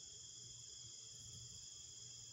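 Faint, steady chorus of crickets at night: several high-pitched trills held without a break.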